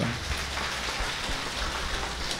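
Steady, even hiss with a low hum beneath it, without a break or change.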